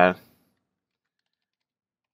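The end of a man's spoken word, then near silence.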